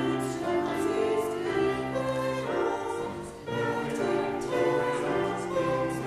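Small mixed church choir of about eight voices singing in harmony, holding long notes, with a brief break about three and a half seconds in before the singing resumes.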